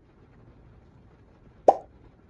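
A single short, sharp pop sound effect about three-quarters of the way through, with a quiet background otherwise.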